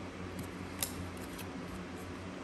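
Baseball cards being shuffled through by hand, giving a few light card snaps and slides, the sharpest about a second in, over a steady low hum.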